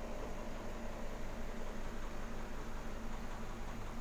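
Steady hiss with a constant low hum, the sound of an aquarium air pump running and its air stone bubbling in the tank.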